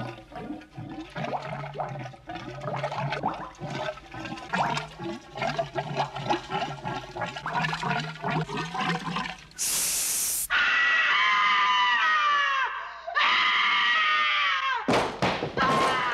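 A woman's voice sounds softly for the first nine seconds. Then comes about a second of rushing, splashing noise, and she breaks into long, piercing screams that fall in pitch, two in a row with a brief gap, followed by more shrieking near the end.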